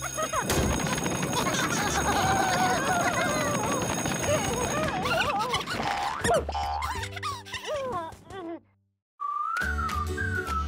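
Cartoon score music under the characters' wordless babbling voices, with a sudden drop to silence about nine seconds in. A new music cue starts right after, over the show's logo.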